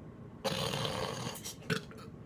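A person gagging at the taste of a foul jelly bean: a rough, breathy throat sound about a second long starting half a second in, then a shorter one near the end.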